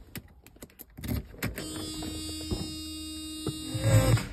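A key clicks into a Mercedes-Benz ignition lock and is turned, and a steady electric hum comes on once the ignition is switched on. Right at the end, a short loud low-pitched burst comes as the key is turned to start.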